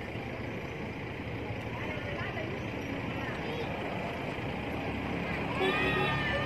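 Steady outdoor background noise with indistinct voices in it; near the end, a few short high gliding calls.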